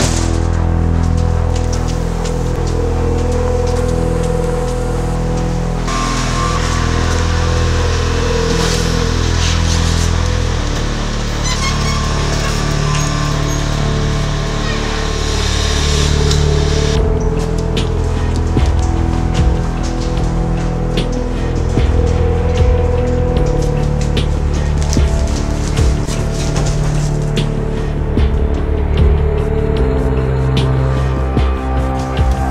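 Background music with sustained low bass notes that change every few seconds. A bright hissing layer comes in about six seconds in and stops about seventeen seconds in, after which quick ticking percussion runs underneath.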